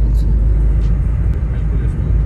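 Steady low rumble of engine and road noise inside the cabin of a moving Maruti Suzuki Swift cab.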